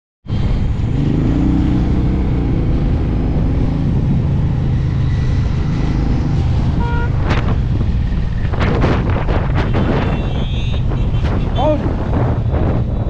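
Suzuki Intruder cruiser motorcycle engine running steadily under way, heard from the rider's seat with wind rushing past the microphone. The wind buffets harder in the second half, and a voice cuts in near the end.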